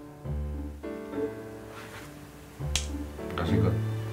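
Background piano music in slow, sustained chords over deep bass notes, with a single sharp click about two and three-quarter seconds in.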